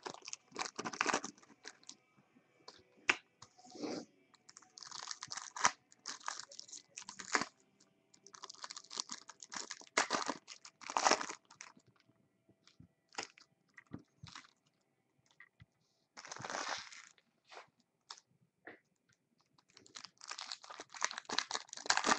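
Foil card-pack wrappers crinkling and rustling in hands as packs are opened and the cards handled. The sound comes in irregular bursts with short quiet gaps between.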